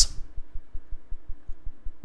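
A pause in speech that leaves only a low, fast-pulsing background rumble, about ten pulses a second. The hiss of a spoken word's last 's' is heard at the very start.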